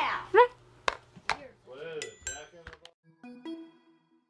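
The metal bars of a toddler's toy xylophone clink and ring as it is handled and set down: a few bright, pinging notes in the second half, after some knocks. A young child's voice and laughter come before them.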